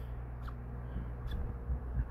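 Quiet room tone: a steady low hum with a couple of faint small clicks.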